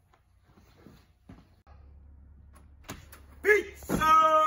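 Faint, quiet room sound with a few light knocks. A low steady hum sets in about one and a half seconds in, and a man's voice breaks in near the end.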